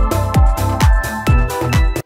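Electronic dance background music with a steady four-on-the-floor kick drum, a little over two beats a second, under sustained synth chords and bright hi-hat percussion.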